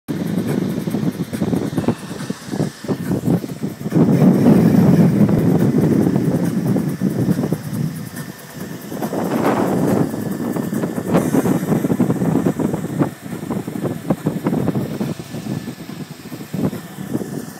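Wind buffeting the microphone over the running 3.8-litre V6 and OMC 800 sterndrive of a deck boat in choppy water, an uneven rumble with irregular knocks, loudest between about four and seven seconds in.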